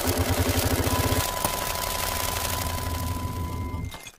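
A vehicle engine running with a rapid, even low throb that settles into a steadier drone about a second in, with a thin steady tone above it. It cuts off suddenly near the end.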